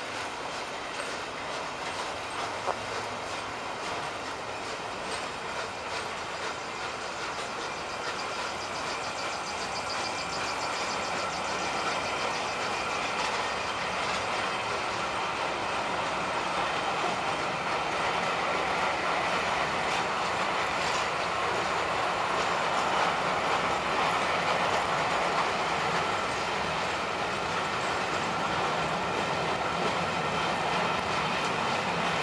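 Steam-hauled Pullman coaches rolling past on the rails: a steady rumble of wheels on track with clicking over the rail joints, growing gradually louder through the middle of the clip.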